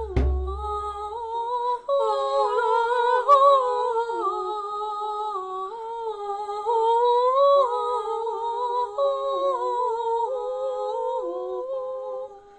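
Background music: a wordless hummed melody moving in steps between held notes. A low drum beat sounds right at the start.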